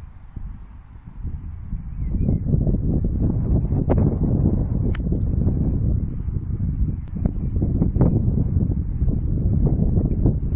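Wind buffeting the microphone, a heavy low rumble that grows much louder about two seconds in and keeps on. About five seconds in, a single sharp click: a golf iron striking the ball.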